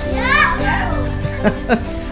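Children laughing and calling out in high voices, loudest in the first second, over soft background music.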